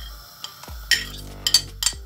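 A metal spoon scraping and clinking against a ceramic plate as sliced onion is pushed off it into a pressure cooker, with several sharp clinks in the second half.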